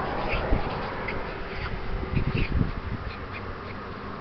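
Wind buffeting and handling noise on a handheld camera's microphone, with irregular low thumps in the second half and a few short high squeaks.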